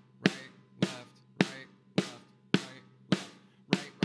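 Drum struck with sticks in slow, even alternating single strokes, seven hits at about two a second, each with a short ringing decay. These are the eighth-note singles of a rudiment exercise that switches to double strokes.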